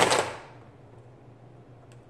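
A short scraping rustle as a ruler is laid and slid against a whiteboard, fading within half a second, then a quiet room with a low steady hum and a faint click near the end.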